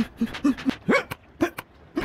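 A cartoon boy character's quick run of short, high vocal grunts and squeaks, about seven in two seconds, with light clicks between them and one rising squeal about a second in, as he dashes to a palm tree and scrambles up it.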